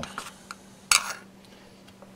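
A metal spoon clicks sharply once against a small ceramic mixing dish about a second in, with a few fainter taps before it, over a low steady hum.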